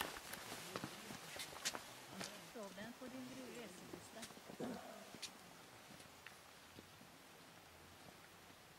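Faint footsteps of people walking on a stone path, a few sharp steps in the first five seconds, with distant voices talking in the middle.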